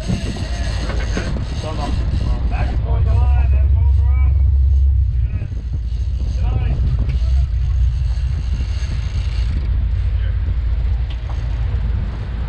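A sportfishing boat's engines running with a low, steady rumble that grows louder for a couple of seconds a few seconds in. Voices call out over it while a fish is fought from the stern.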